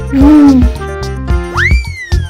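Children's song backing music with a steady beat; at the start a voice sings one syllable, the letter name "V", and about one and a half seconds in a whistle-like sound effect rises sharply and then slowly falls.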